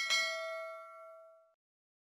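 Notification-bell sound effect: a single bright ding, ringing with several tones at once and fading out after about a second and a half.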